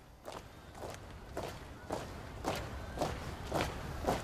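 A military honor guard marching in unison: many boots striking the pavement together as one step, about two steps a second, in a steady cadence that grows louder as the column approaches.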